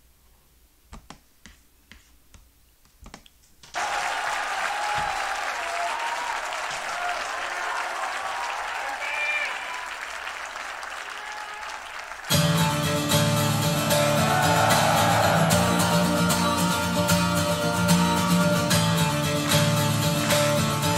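A few sharp mouse clicks over near silence. From about four seconds in, a concert crowd cheers and applauds. About twelve seconds in, a live band starts a soft, sustained guitar intro with a low bass underneath.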